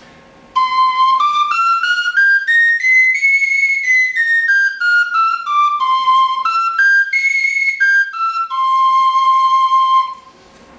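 Sicilian friscalettu, a cane fipple flute in C that needs little breath, playing a C major scale. It steps up one octave note by note and back down, runs up and down again, and ends on a long held low C, in a fine, thin tone.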